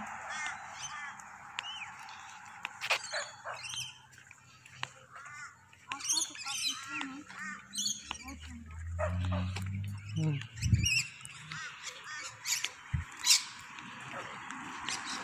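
Birds chirping and calling repeatedly. About eight to ten seconds in there is a low hum, then two low thuds.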